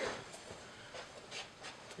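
Faint rustling and soft scuffs of uniforms and bodies moving on a training mat, with a few light ticks.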